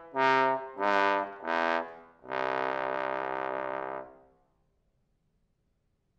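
Solo bass trombone playing three short detached notes, then a long held lower note that dies away about four and a half seconds in, leaving silence.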